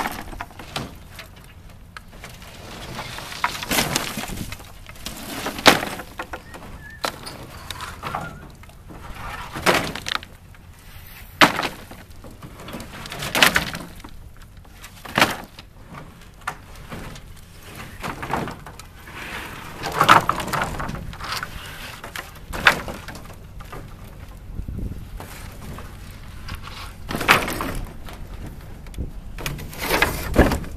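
Old wooden boards pulled from a truck bed and thrown one after another onto a pile of lumber, each landing with a sharp wooden clatter, about a dozen times at uneven intervals.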